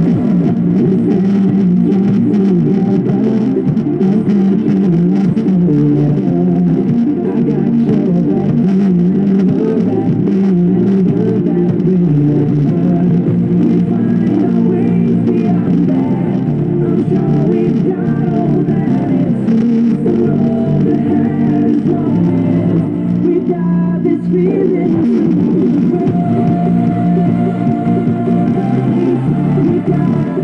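Music playing loud through a Bose SoundLink Mini portable Bluetooth speaker running with its grille off, its sound heavy in the low mids with little treble.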